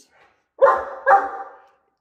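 Great Dane barking twice, about half a second apart.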